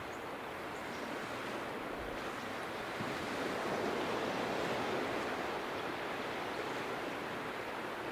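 Surf washing onto a sandy beach, a steady rush of noise that swells a little in the middle.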